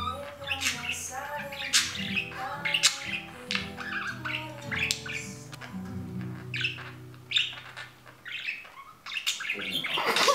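Budgerigar chattering and chirping with short squawks while it tumbles with a cord toy, over background music with sustained notes that fade out near the end.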